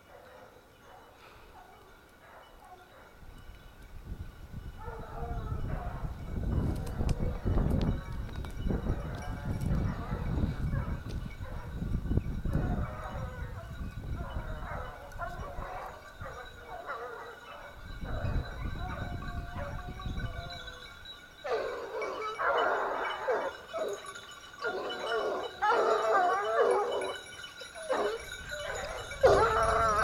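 Hunting hounds baying on a wild boar's trail, distant at first, then louder and closer from about two-thirds of the way in. A low rumble sits under the calls through the middle.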